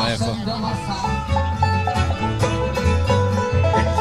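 Bluegrass band playing: banjo picking over acoustic guitar and fiddle, with an upright bass plucking a steady line of low notes.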